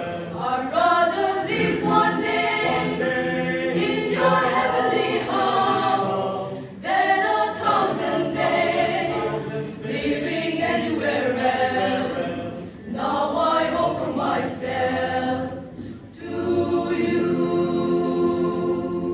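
Mixed choir of men's and women's voices singing a hymn a cappella, in parts. The singing pauses briefly between phrases three times, and the last phrase is held on long notes.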